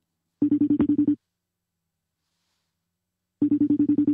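Outgoing phone call ringing while waiting for the other end to pick up: two short trilling rings, each a rapid flutter of about ten pulses, about three seconds apart.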